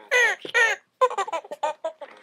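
Toy chimpanzee making chimp calls: three loud falling screeches, then a quick run of short hoots about a second in.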